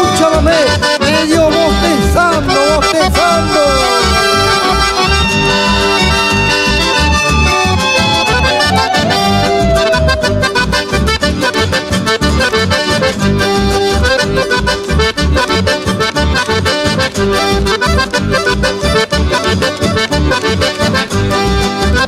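Chamamé instrumental passage: two button accordions play the melody together over guitars and an acoustic bass keeping a steady pulsing beat.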